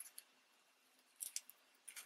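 Faint, brief scratching and rustling of crinkled momigami paper as a paper flower is pressed with a ball stylus and fingertips on a foam pad: a few short scratches near the start, a small cluster a little over a second in, and another near the end.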